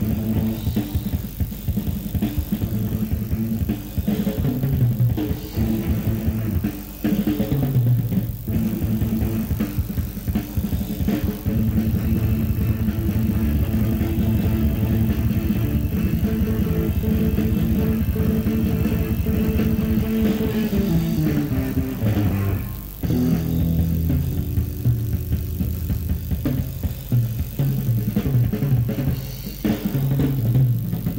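Blues-rock band playing live: electric guitar, bass guitar and drums in a passage without singing, sustained guitar notes over a steady bass and drum groove.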